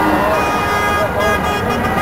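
Steady roadside traffic noise from cars driving past, with people's voices mixed in.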